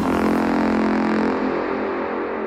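Techno in a breakdown: the kick drum drops out, leaving a sustained synth chord whose treble is gradually filtered away.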